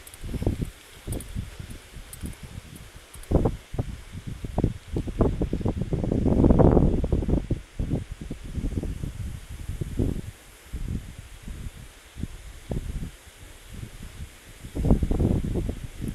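Wind buffeting the microphone in irregular low gusts and thumps, the strongest swell about six to seven seconds in.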